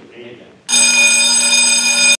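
A loud, steady ringing tone made of several high pitches starts suddenly about two-thirds of a second in and holds without fading until it cuts off.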